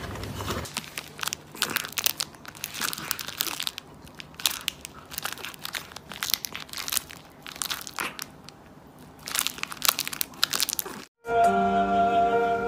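A cat biting and clawing at a crinkly plastic wrapper: an uneven run of crackling and crunching plastic. Near the end it cuts off and music begins.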